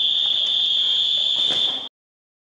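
A loud, high-pitched steady signal tone, as from a game buzzer, held for nearly two seconds and then cut off abruptly near the end, with a couple of faint clicks under it.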